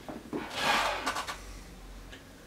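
A 2-litre plastic soda bottle handled and lifted off a table: a brief rubbing, scraping noise with a few light clicks, about a second long.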